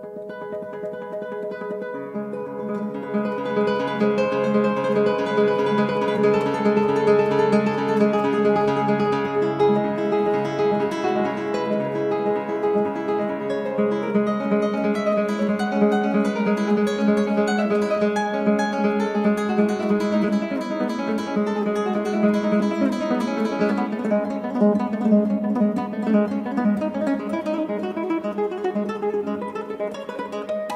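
Solo nylon-string classical guitar played fingerstyle: fast, rippling arpeggios over low bass notes left ringing as a drone. It swells in loudness over the first few seconds.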